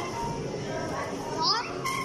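Busy arcade din: children's voices mixed with electronic game-machine music and jingles.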